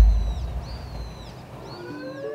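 A bird calling several times in high, arched calls, over the fading low rumble of a deep boom that lands right at the start; a rising whistle begins near the end.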